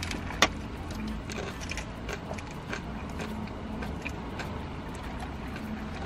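A crunchy hard taco shell being bitten and chewed, with a few sharp crackles, the strongest about half a second in, over a steady low rumble inside a car's cabin.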